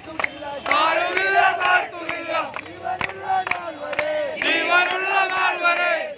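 A crowd of people shouting and chanting together in loud surges, with sharp short hits recurring throughout.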